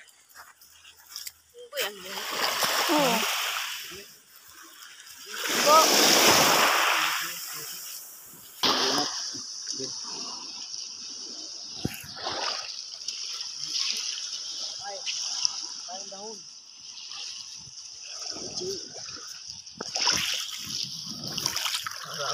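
Water splashing in two loud surges in the first eight seconds, the second the louder, then lighter sloshing over a steady high hiss.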